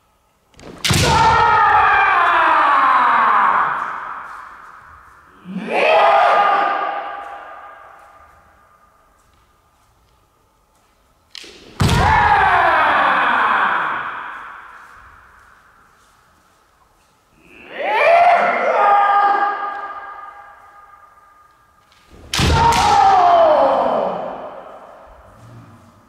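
Kendo kiai: two fencers taking turns with long, drawn-out shouts, five in all, each lasting two to three seconds and ringing on in a large gym. The shouts come in pairs. The first of each pair opens with a sharp crack and falls in pitch.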